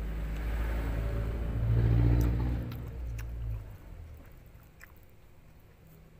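A motor vehicle going past: a low engine rumble that swells to its loudest about two seconds in and fades away by about four seconds in. A few faint small clicks come through as well.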